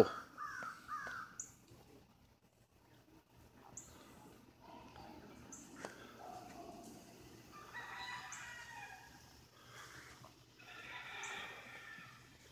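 A rooster crowing faintly in the distance, twice in the second half, each crow drawn out for about a second or more.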